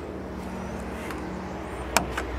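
A steady low hum, with one sharp click near the end: a CCS fast-charging connector latching into an electric car's charge port.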